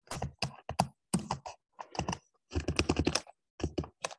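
Typing on a computer keyboard: quick, irregular runs of key clicks broken by short pauses.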